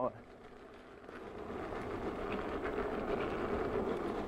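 Riding noise of a Veteran Sherman electric unicycle on a rough, bumpy trail: a steady rushing of tyre and air that grows louder after about a second, with faint ticks from the surface.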